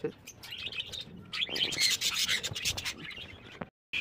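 Budgerigars chirping and chattering in a cage, many short high calls, densest about a second and a half in. The sound cuts out briefly just before the end.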